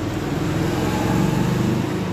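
A steady low mechanical hum, like a motor running, swelling slightly in the second second.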